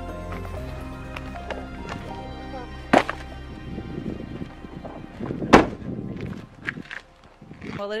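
Background music, with a sharp knock about three seconds in and a louder thud about five and a half seconds in as an SUV's tailgate is pulled shut.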